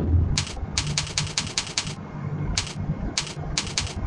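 Computer keyboard keys pressed about a dozen times in sharp clicks: a quick run of about seven keystrokes, then a few single presses spaced out near the end, as the spreadsheet selection is stepped across the columns.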